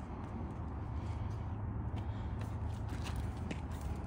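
A steady low rumble on the microphone, with a few faint clicks and taps of a person climbing a steep metal ladder with grated steps.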